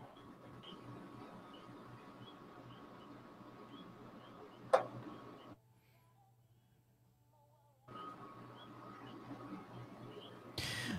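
Faint, low-level background with soft, regularly spaced ticks, broken by one sharp click about halfway through. Shortly after the click the sound drops out to dead silence for about two seconds, then the faint background returns.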